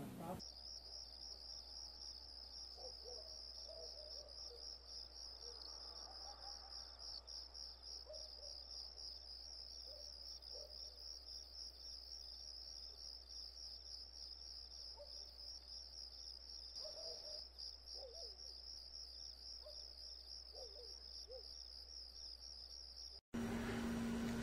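Crickets chirping in a quiet, steady, high-pitched pulsing trill that cuts off suddenly about a second before the end.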